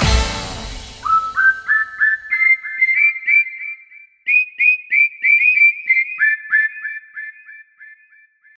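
The last chord of a dance-music track dies away at the start. Then comes a whistled tune of short high notes, each sliding up into pitch, about three a second, in two phrases with a brief break about four seconds in.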